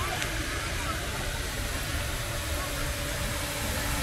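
Steady rush of an ornamental fountain's water jet splashing into its basin, with a low rumble underneath.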